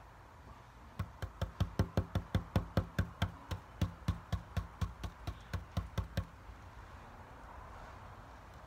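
Paintbrush dabbing paint through a stencil onto a box lid: a quick, even run of sharp taps, about five a second, starting about a second in and stopping after about five seconds.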